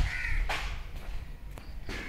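A crow cawing once at the start, a short call, followed by a couple of footsteps on the tiled floor.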